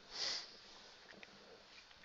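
A person's single short sniff about a quarter second in, followed by quiet room tone with a few faint ticks.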